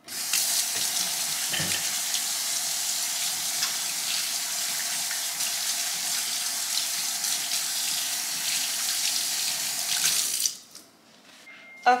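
Kitchen sink faucet running, a steady rush of water that shuts off suddenly about ten and a half seconds in.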